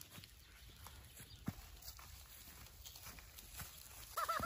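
Faint footsteps: a few scattered light taps on a gravel and concrete path, the clearest about a second and a half in, over near-silent outdoor quiet.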